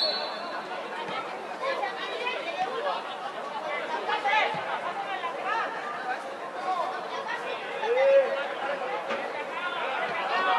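Several voices of players and onlookers calling out and chatting at once across an open football pitch, with a brief high whistle blast right at the start.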